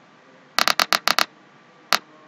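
Simulated buzzer of a Proteus Arduino gas-leak alarm circuit sounding through the computer as short, choppy clicking bursts: about six between half a second and a little over a second in, and one more near the end. It is the alarm sounding for a detected gas leak.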